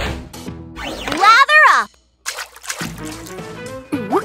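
Children's cartoon background music, with a character's wordless voice about a second in, wavering up and down in pitch for nearly a second. The music then breaks off briefly and starts again.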